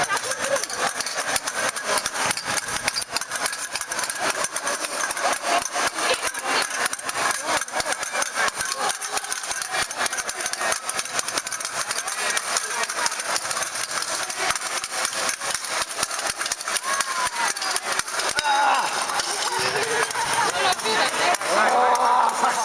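Many fencing blades clicking and clashing against each other in a dense, irregular clatter as several pairs of fencers drill at once, with voices in the background that grow clearer near the end.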